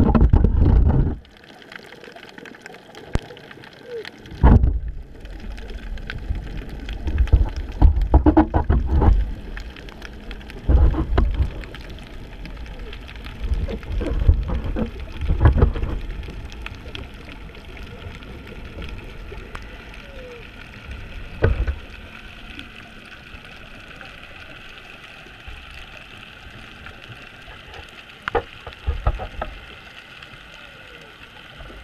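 Muffled underwater sound from a camera in a waterproof housing: a steady hiss with irregular low rumbling surges of water movement and bubbling.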